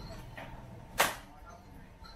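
A butcher's cleaver chopping into a bone-in leg of meat on a wooden chopping block: one sharp chop about a second in, with a lighter knock shortly before it.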